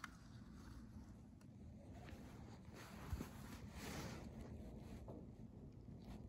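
Faint rustle of a toy car's plastic wheels rolling over carpet, a little louder midway, with one small tick.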